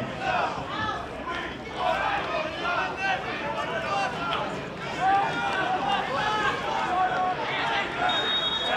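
Several indistinct voices of players and a small crowd talking and calling out over one another at a football ground.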